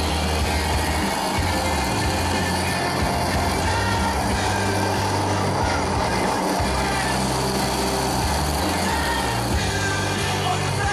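Rock music with a moving bass line over the steady whir of an electric countertop blender running.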